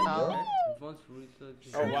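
People's voices: a high-pitched, drawn-out 'ooh' that falls in pitch during the first second, followed by quieter scattered talk.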